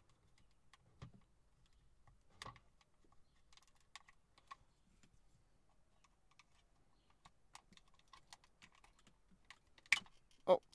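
Faint, irregular small plastic clicks and ticks as a small screwdriver prods into the back of the start-button assembly, pushing at the housing to free the button's plastic notches, with a sharper click near the end.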